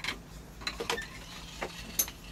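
Scattered creaks and clicks from an office chair and its tow strap under heavy pull from an MRI scanner's magnet, over a steady low hum.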